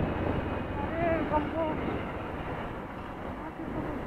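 Steady rush of wind on the microphone with a motorcycle's engine and tyre noise underneath, easing slightly as the bike slows. A faint voice comes through briefly about a second in.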